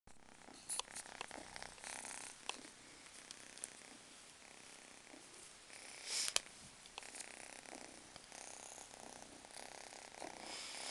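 Young calico kitten purring faintly, with a few sharp clicks and rustles scattered through.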